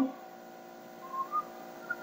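Quiet background with a faint steady hum made of several level tones, and a few short, faint whistle-like tones about a second in and again just before the end.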